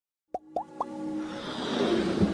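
Intro jingle sound effects: three quick rising pops, each a little higher than the last, followed by a swelling whoosh that builds in loudness.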